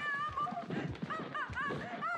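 High-pitched, wavering human voice sounds with no clear words, rising and falling in pitch in short broken phrases.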